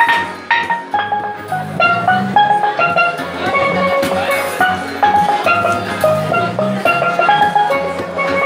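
A pair of steel pans played with rubber-tipped sticks: quick runs of short, ringing pitched notes, several a second, carrying a melody.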